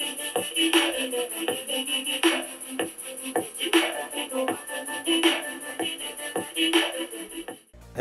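Pop song with a steady beat, about two beats a second, played through the WiMiUS K7 projector's built-in speaker and picked up in the room. It cuts off abruptly near the end.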